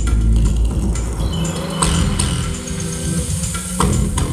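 Live trip-hop band music in a breakdown: deep sustained bass with a few sharp hits about two seconds in and near the end, the drum beat dropped out.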